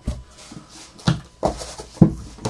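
Handling sounds on a tabletop: a few short knocks and rustles as cards and plastic card holders are set down and moved, ending in a louder bump as an elbow knocks into the camera.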